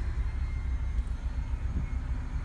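Steady low rumble inside a 2012 Honda CR-V's cabin, the engine idling with the air conditioning on.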